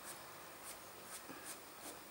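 Faint scratching of a white colored pencil on paper: about five short strokes, roughly one every half second.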